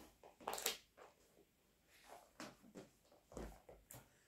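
Faint rustling of book pages being turned: one brief rustle about half a second in, then a few softer ones later.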